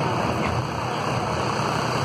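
Hay wagon rolling along with a steady low engine rumble from the vehicle towing it.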